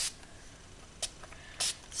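A few brief, faint, hiss-like noises from handling craft materials on a tabletop, three short ones spread over two seconds.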